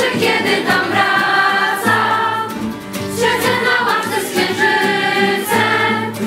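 A large group of young voices singing a song together in unison, accompanied by strummed acoustic guitar.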